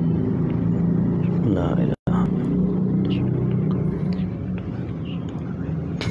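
A steady low rumble, like an engine running, with a momentary cut-out about two seconds in.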